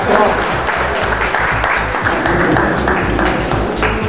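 Background music with a repeating bass line under audience applause; the applause cuts off near the end.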